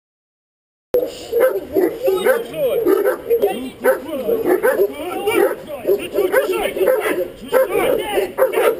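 Guard dog barking at an approaching decoy in rapid, unbroken succession, starting abruptly about a second in.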